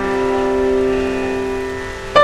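Background piano music: a chord held and slowly fading.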